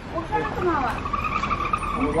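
A car's brakes squealing: a steady high-pitched squeal held for about a second, with voices around it.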